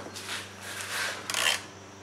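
Soft scraping and rubbing of a metal socket extension against engine parts as it is fished onto a bolt deep in the engine bay, with one louder scrape about a second and a half in.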